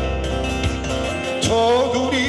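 Acoustic guitar strummed as song accompaniment, with a man's singing voice coming in about one and a half seconds in on a rising, held note, amplified through a microphone.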